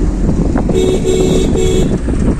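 A vehicle horn sounds three short honks in quick succession over the steady road rumble heard inside a moving car's cabin.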